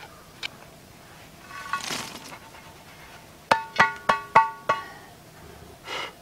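A cast iron Dutch oven lid scrapes, then is knocked against a steel fire-pit ring five times in quick succession, about three a second. Each strike rings with a clear metallic tone.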